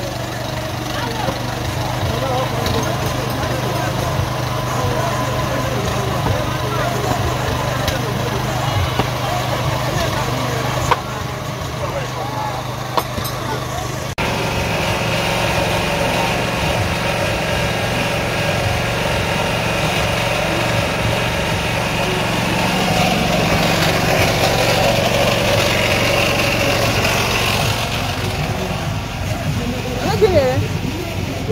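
Open-air market sound: a small engine running steadily under the chatter of people nearby. Its hum changes suddenly about halfway through and runs on.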